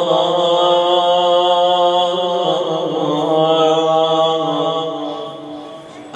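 A man's voice chanting rawza, Shia elegiac recitation, into a microphone: long held melodic notes with the pitch stepping down about two seconds in, then the phrase fading away near the end.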